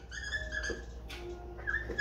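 Dry-erase marker squeaking on a whiteboard while letters are written, in short high-pitched squeaks, some sliding in pitch, over a low steady hum.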